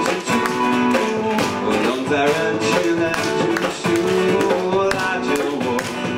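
Live acoustic band music: strummed acoustic guitar chords with sharp percussive strokes in a steady rhythm.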